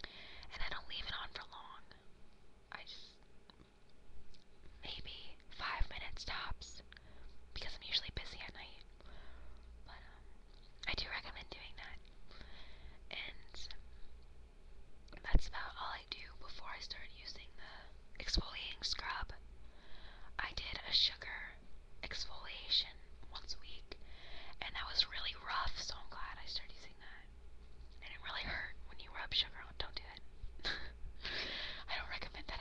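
A woman whispering in soft, breathy phrases, with one sharp click about halfway through.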